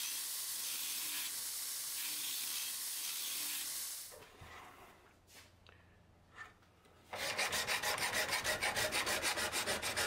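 Steel blade pressed against a running belt grinder set up as a surface grinder: a steady grinding hiss for about four seconds. After a few quiet seconds with faint clicks, a hand file is stroked back and forth over the steel blade in a file guide, about four quick rasping strokes a second.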